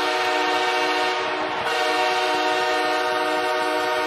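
Arena goal horn sounding one long, steady multi-note blast over a cheering crowd, marking a home-team goal.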